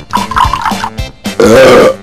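A loud, rough burp of about half a second, past the middle, over music.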